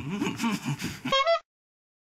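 A person's voice wavering up and down in pitch without words, ending a little over a second in with a short falling tone that cuts off suddenly.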